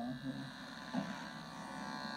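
Electric hair clippers buzzing steadily as they trim hair around the ear.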